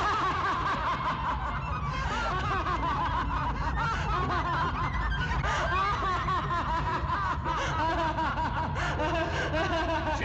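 Several voices laughing and snickering together, overlapping, over a low steady drone.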